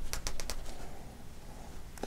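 Yarn drawn through crocheted stitches and tugged tight to cinch the top of a crocheted mitten closed. There are several quick, soft rustling swishes in the first half second, then faint handling rustle.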